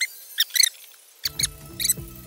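Squeaky sound effect: about five short, high-pitched squeaks in quick bursts. Background music comes in just over a second in.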